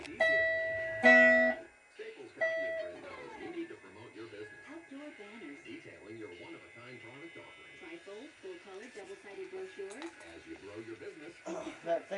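Electric guitar notes ringing out: two loud sustained notes with sharp attacks in the first two seconds, a third about two and a half seconds in, then quieter voices and music underneath.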